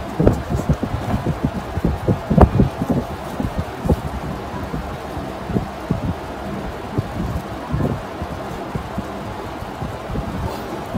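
Irregular dull thumps and rubbing, handling noise of gloved hands moving close to the microphone over a steady low hiss. The thumps come thickest in the first few seconds, the loudest a little over two seconds in, then thin out.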